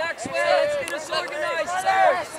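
Several people's voices overlapping, calling out and chattering at once, with no words clear enough to make out.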